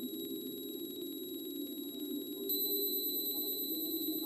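Ambient electronic music: a steady, murmuring synthesized drone in the low-middle range with faint, thin high steady tones above it, which grow a little louder about two and a half seconds in.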